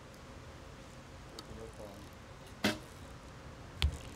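A recurve archery shot: a sharp crack about two-thirds of the way in, then about a second later a louder hit with a low thud as the arrow strikes the target, over a faint steady outdoor background.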